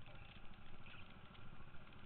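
Go-kart engines idling and running at low speed, a steady rumble.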